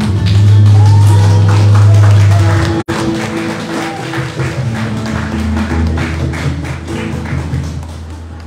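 Live acoustic band playing: strummed acoustic guitars over electric bass and cajón. A heavy low bass note holds for the first couple of seconds, the sound cuts out for an instant about three seconds in, then fast percussive strumming carries on and fades toward the end.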